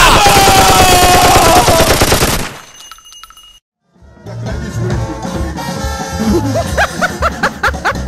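Rapid machine-gun fire with a man's long, falling cry over it, fading out after about two and a half seconds into a moment of silence. About four seconds in, music with a steady beat starts.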